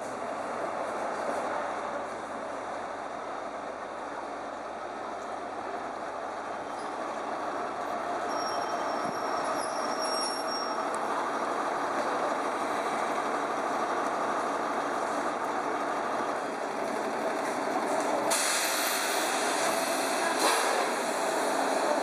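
Diesel engine of a First Great Western HST (InterCity 125) power car running steadily, growing gradually louder. About three-quarters of the way through a loud hiss of released air sets in and continues.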